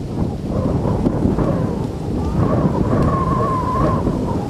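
Heavy wind buffeting a camcorder's built-in microphone: a loud, continuous low rumble and blustering noise.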